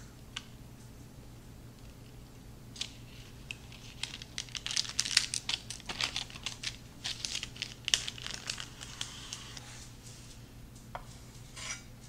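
A chef's knife pressed down through a slab of brownies sitting on parchment paper, the paper and crust crinkling and scraping under each cut. After a quiet start, a run of short crinkles and scrapes comes from about three seconds in to about nine seconds, with a couple of single ones near the end.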